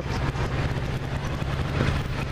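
Motorcycle engine running steadily at low speed, heard on board while riding in traffic, with a steady hiss over it.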